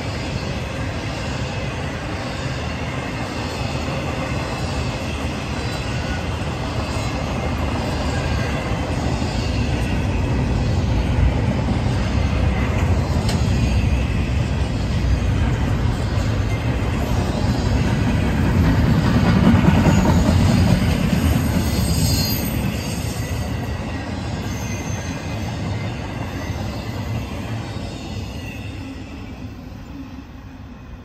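Empty intermodal flatcars of a passing freight train, their wheels rumbling on the rails. The sound grows to its loudest about two-thirds of the way through, then fades near the end as the last cars pass.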